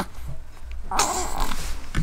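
Newborn baby fussing: short whimpering cries, with a breathy, louder cry about a second in.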